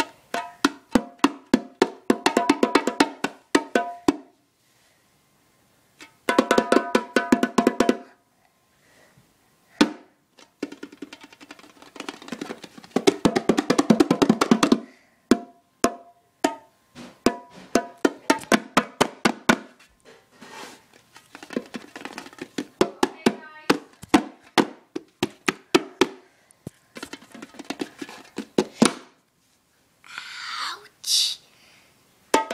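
A pair of bongos played by hand in fast runs of strikes, broken by short pauses between phrases.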